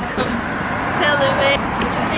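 Steady road traffic noise from a street, with a person's voice calling out in one held note for about half a second, about a second in.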